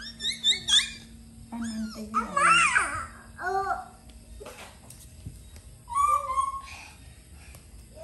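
Young children's voices as they play: a quick run of short, high rising squeals at the start, then babbling calls and brief shouts.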